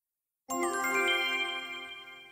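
A short sound-effect chime: several bell-like notes come in one after another about half a second in, then ring on and slowly fade.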